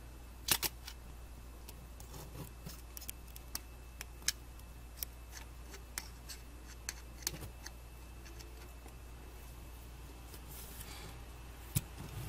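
Faint, irregular light clicks and ticks of a small flat-blade screwdriver tip tapping and scraping on the metal tabs of stepper-motor driver chips as heatsink compound is spread over them. The loudest click comes about half a second in.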